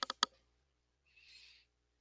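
Two sharp clicks a fraction of a second apart, then a brief faint hiss about a second later.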